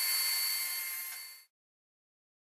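Steady hiss with a few thin high whining tones, fading out to silence about one and a half seconds in.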